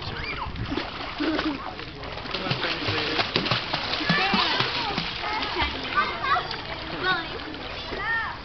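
A child's legs kicking in a swimming pool while she holds the edge, her feet splashing the water in a continuous run of splashes.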